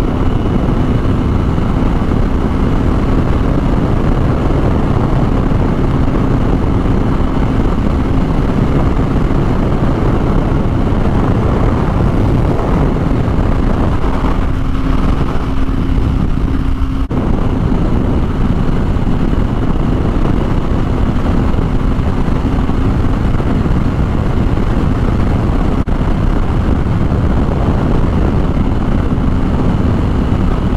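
Kawasaki Ninja 250R's small parallel-twin engine cruising at a steady note, with heavy wind rushing over the microphone at road speed.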